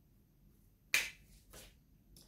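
Tarot cards being handled: one sharp snap of a card about a second in, then a brief softer rustle.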